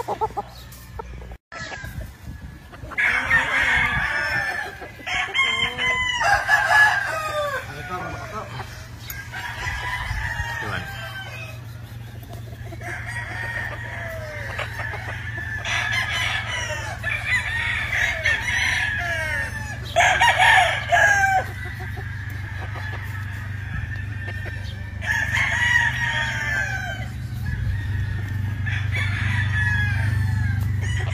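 Gamefowl roosters crowing again and again, the crows in separate bouts every few seconds and sometimes overlapping, with clucking between them. A steady low hum runs underneath and grows louder toward the end.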